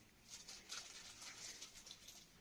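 Near silence, with only a few faint soft patters.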